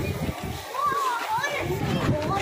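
Children's voices chattering and calling out in a busy crowd, with a high, sing-song voice rising and falling about halfway through.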